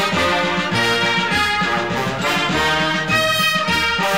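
Brass-led band music: trumpets and trombones playing an instrumental passage between sung verses over a steady march beat in the bass.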